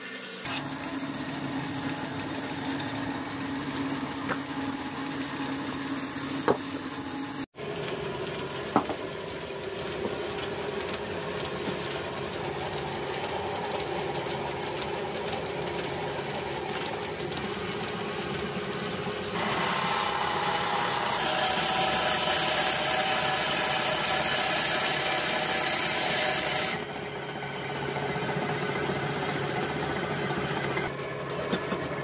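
A band saw running as it cuts through a thick mango-wood block, with a couple of sharp ticks. After a sudden break, an electric wood lathe runs steadily while a hand tool cuts the spinning blank, louder for several seconds past the middle.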